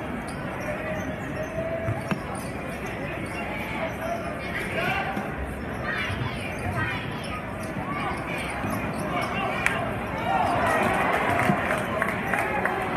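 Basketball bouncing on a hardwood gym floor amid the chatter of a crowd of spectators in the gym. The crowd grows louder near the end as play moves up the court.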